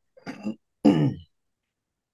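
Throat clearing in two parts: a short, weaker rasp, then a louder voiced 'ahem' that falls in pitch about a second in.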